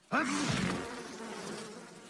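Cartoon flies buzzing around a shaggy yak, with a brief low vocal sound from the yak as the buzzing starts.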